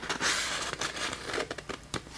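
A sheet of sticky label paper crinkling and rustling in the hands as it is bent and handled, with many small crackles, loudest at the start.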